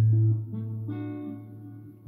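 Modelling electric guitar played through an amp-modelling rig: a low note rings on and fades, then new notes are plucked about half a second in and slowly decay.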